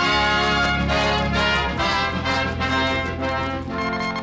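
Orchestral music led by brass, trumpets and trombones, playing over a held low note that changes near the end. It is a music bridge between scenes of a record's radio-style adventure drama.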